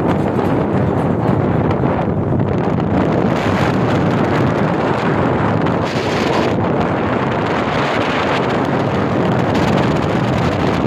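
Wind buffeting the microphone over the steady rumble of a moving vehicle and road traffic.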